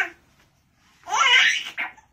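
A young baby's excited vocalising: a brief sound at the start, then a longer, louder laughing squeal beginning about a second in and lasting nearly a second.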